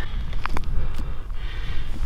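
Wind rumbling on the microphone, with a couple of short clicks and a brief rustle near the end as fishing line is pulled up by hand through a hole in the ice.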